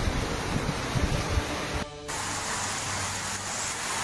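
Heavy rain, with gusts of wind rumbling on the phone's microphone. About two seconds in, the sound dips briefly, then a steadier rush of rain follows.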